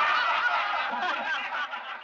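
A group of people laughing, several voices at once, dying down near the end.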